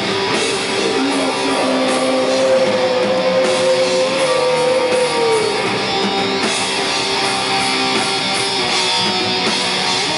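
Live heavy metal band playing loudly: distorted electric guitars strumming over drums and cymbals, with one long held note that slides down in pitch about five seconds in.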